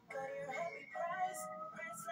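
A short sung jingle with music from a TV commercial, heard through a television's speaker in a small room.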